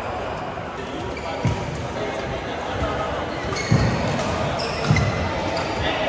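Badminton players' footwork on an indoor court: low thuds of feet landing at about 1.5, 3.7 and 5 seconds in, with short shoe squeaks on the court mat in the second half.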